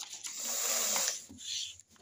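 A sheet of paper in a handwritten file being turned over: a rustle lasting about a second, then a shorter, softer one.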